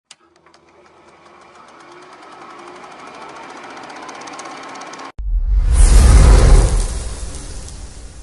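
Logo-intro sound effects: rapid, even film-projector-style clicking with a tone under it, growing louder for about five seconds. It cuts off abruptly, and a loud, deep boom follows and slowly fades.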